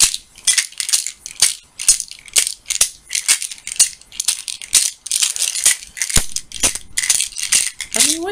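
Pills rattling in a plastic pill bottle as it is shaken, in an uneven run of about two or three shakes a second.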